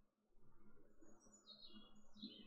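Near silence, with a faint bird singing: a quick run of high notes falling in pitch, starting about halfway in.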